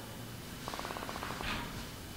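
A faint, brief creaky hum from a woman's voice, a quick run of pulses during a hesitation pause, followed by a soft breath.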